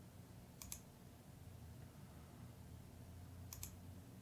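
Two brief computer mouse clicks, each a quick double tick of press and release, one a little over half a second in and one near the end, over near silence.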